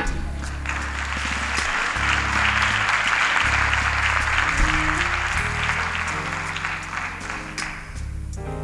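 Audience applauding: it builds up in the first second and dies away near the end. Soft background music with held low chords plays underneath.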